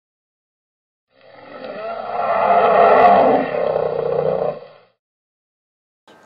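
A single long roar that swells in about a second in, is loudest near the middle and fades out before the end, lasting about three and a half seconds.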